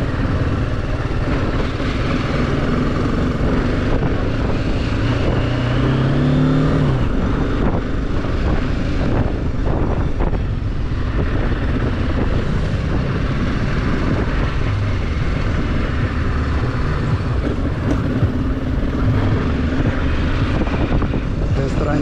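Motorcycle engine running while the bike is ridden at low speed, heard from the rider's seat, with wind noise. The engine note rises from about five seconds in, then drops away sharply at about seven seconds.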